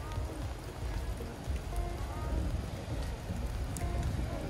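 Steady rain falling on wet ground and parked cars, with faint music playing and a low rumble underneath.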